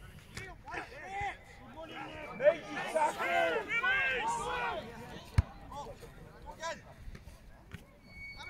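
Voices shouting across an open rugby pitch, the loudest calls about three to four seconds in, with a single sharp knock about five and a half seconds in.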